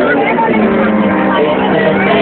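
Loud live concert sound from the venue's PA, recorded on a handheld camera with a muffled, dull top end: a voice over a steady, held low synth note.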